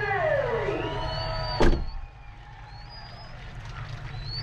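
The Mustang GT's V8 idling low, heard from inside the cabin, with a drawn-out voice sliding up and down in pitch over it at first. About a second and a half in there is a single sharp knock, and after that the sound is quieter.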